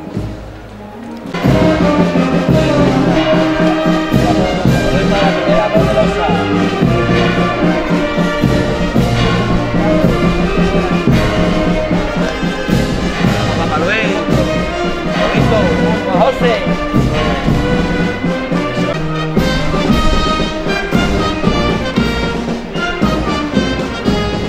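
Brass band playing a slow Holy Week processional march, coming in loudly about a second in.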